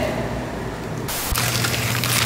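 Blue masking tape and paper being peeled off a car's vinyl-wrapped front end, a ripping tear that turns loud about a second in.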